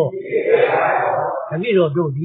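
A man's voice delivering a Burmese Buddhist sermon, speaking continuously with a rising and falling, drawn-out intonation.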